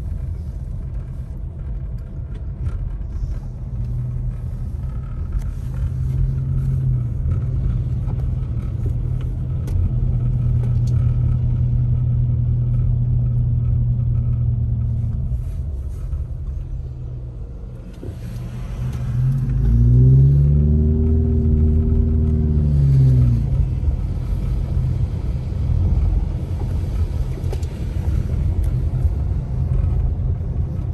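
Car interior road noise while driving on snow-covered streets: a steady low engine and tyre rumble. About two-thirds of the way through, the engine's pitch rises and then falls once as it revs up and eases off.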